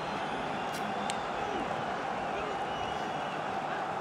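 Pitch-side ambience in an empty stadium: a steady hiss of open air with faint, distant voices of players on the field.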